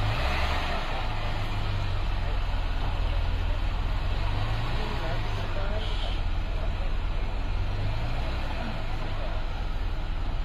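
Engine of a lifted 4x4 off-road SUV running with a steady low rumble as the vehicle creeps slowly forward, its pitch shifting a little as it moves.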